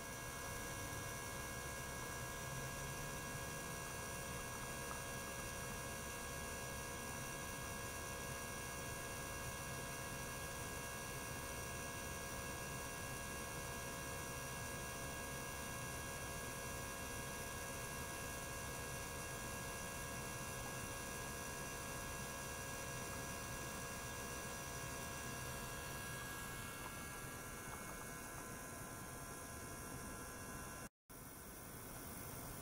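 Steady hum of running ultrasonic lab equipment, an ultrasonic bath with a small water-circulation pump, carrying several steady tones. The higher tones shift slightly near the end.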